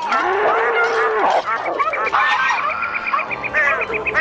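Comic sound-effects stinger made of mixed animal noises: a long cow moo in the first second, then a fast jumble of squeaky calls and glides with a rapid high trill in the middle.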